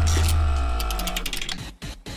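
Musical transition sting: a deep bass boom that fades away over about a second and a half, with a quick run of ticking clicks on top before it dies out.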